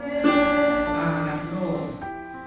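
Electronic keyboard played by a child: a few held notes, one starting just after the beginning and a lower one joining about a second in.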